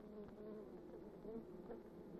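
Faint, wavering hum of many honey bees buzzing together inside a hive.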